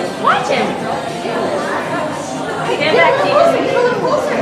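Voices chattering in a large indoor hall, with background music playing underneath.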